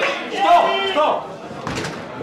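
Men shouting over an arm-wrestling table, with a sharp thud about half a second in as one wrestler's arm is slammed down for the pin.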